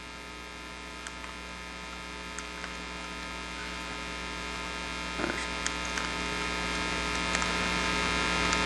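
Steady electrical mains hum with many evenly spaced overtones, gradually growing louder, with a few faint scattered clicks.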